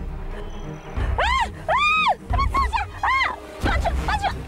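A woman's long, high-pitched cries of distress, four or five in a row, each rising and then falling in pitch, over dramatic background music.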